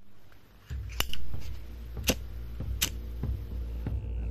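Sharp metallic clicks of a flip-top lighter being handled, three louder ones about one, two and three seconds in. Under them, from just before the first click, runs a low steady drone with a faint regular beat.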